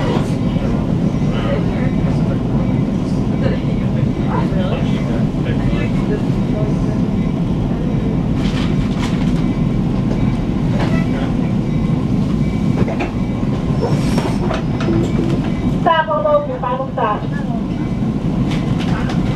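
Metro-North Comet V commuter coach rolling slowly into a terminal platform, heard from inside: a steady low rumble of wheels and running gear with scattered clicks. About 16 seconds in, a short high-pitched wavering sound rises over it.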